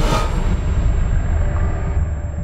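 Trailer sound design at the title card: a loud low rumbling drone, opened by a short rushing hit that fades within a fraction of a second.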